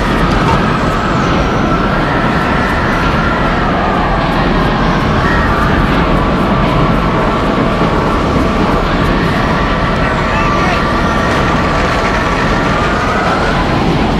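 Tornado wind sound effect: a loud, steady roar with a wavering, howling whistle over it that sweeps upward near the end.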